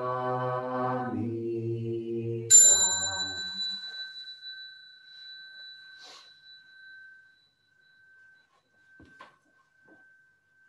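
Two voices chant in unison, the chant stepping down to a lower note about a second in and ending about two and a half seconds in. Then a small bell is struck once and rings on with clear high tones, fading slowly over the following seconds.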